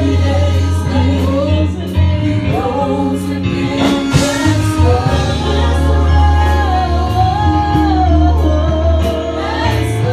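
Live gospel worship music: several voices sing a melody into microphones over long, sustained bass notes and a steady drum beat, amplified through the hall's speakers.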